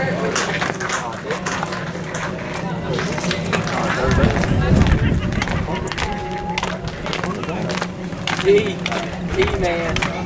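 Indistinct chatter and calls from players and spectators at an outdoor baseball game, with scattered short clicks and a low rumble about four to five seconds in.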